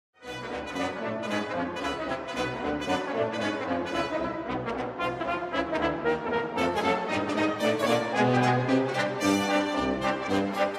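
Brass ensemble of trumpets, horns and trombones playing a brisk piece in quick, repeated notes.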